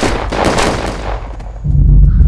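Film-trailer gunfire: a rapid burst of shots in quick succession, dying away about a second and a half in. A deep low rumble sets in near the end.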